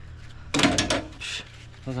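A brief clatter and scrape of pliers about half a second in, as they are brought onto and clamped around a brass fitting on a soft-wash booster pump. A spoken word follows at the end.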